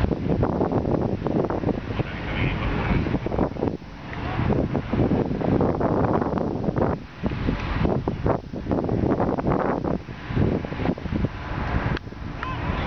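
Wind buffeting the camera microphone: a loud, uneven rumbling rush that swells and falls in gusts, easing briefly about four and seven seconds in.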